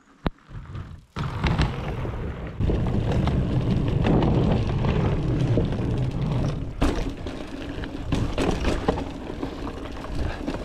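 Voodoo Bizango 29er hardtail mountain bike riding over a wooden boardwalk, wooden steps and a dirt trail, heard from a chest-mounted action camera: steady tyre and rolling noise with rattles and short knocks from the bike, and one sharp knock about seven seconds in. It starts about a second in, after a single click in near silence.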